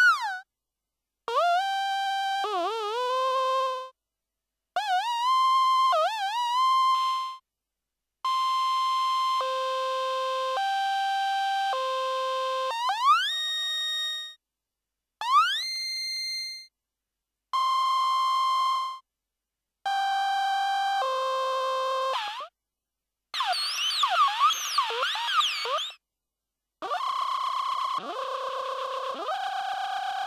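Syng 2 LE software vowel synthesizer playing a run of short preset demo phrases, about eight in all, each cut off by a brief silence. Some phrases sweep and wobble in pitch like a voice sliding between vowels. Others step between held notes, one ending in a quick rising glide.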